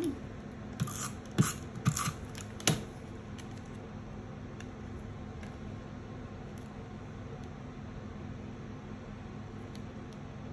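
A handful of short clicks and taps in the first three seconds, from paper pieces and craft tools being handled and set down on a tabletop. After that only a steady low background hum remains.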